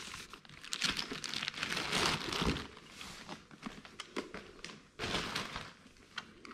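Plastic wrapping film crinkling as it is handled and pulled off a robot vacuum cleaner, in irregular bursts with small clicks, loudest about two seconds in and again near the end.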